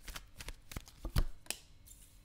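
A deck of tarot cards being shuffled and handled by hand: a run of short, crisp card snaps. One louder knock comes a little past halfway.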